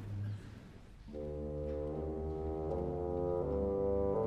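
Orchestral brass enter about a second in with held chords that move to a new harmony every second or so: the opening bars of the concerto's slow first movement.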